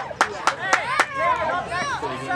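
Sharp hand claps, about four a second, that stop about a second in, over indistinct overlapping voices.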